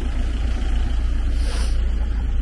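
Parked refrigerated delivery truck running close by: a steady low rumble, with a short hiss about a second and a half in.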